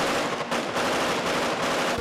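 Automatic gunfire, many shots in quick succession.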